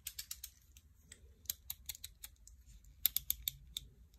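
Runs of sharp plastic clicks from the blade slider of an orange snap-off utility knife as the blade is pushed out, a few near the start, more in the middle and a quicker, louder run in the last second.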